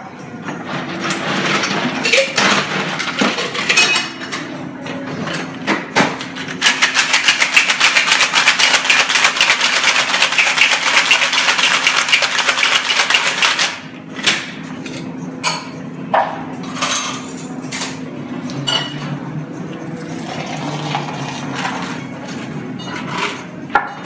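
Metal cocktail shaker tins shaken hard: a fast, even rattle lasting about seven seconds, starting some six seconds in. Before and after it, scattered clinks and knocks of metal bar tools and tins being handled.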